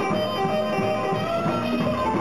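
A rockabilly band playing live: electric guitar over upright double bass and a drum kit, with a line of held, stepping guitar notes.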